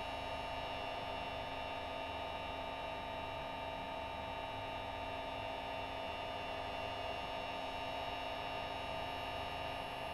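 Steady electrical hum with several held tones from a Tesla coil's solid-state driver electronics running a test into a metal-tray dummy load.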